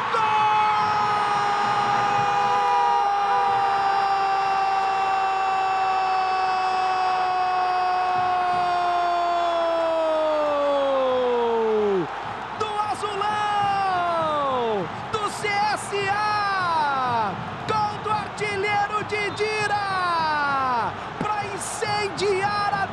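A Brazilian TV football commentator's goal call: one long, high, held "Gooool" shout lasting about twelve seconds that drops sharply in pitch as it ends. It is followed by a run of shorter shouts that each slide downward.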